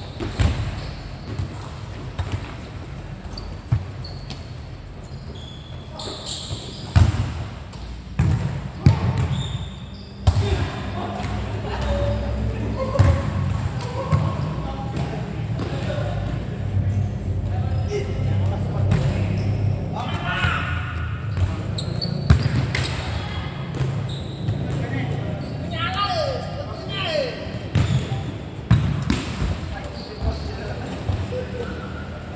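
Futsal ball being kicked and bouncing on a court inside a large covered hall: scattered sharp thuds that ring on in the hall. Players shout to each other between the kicks, most often in the last third.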